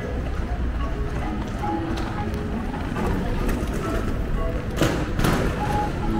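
Busy street ambience: passers-by talking and snatches of music over a steady low city rumble. Two short rushing noises come near the end.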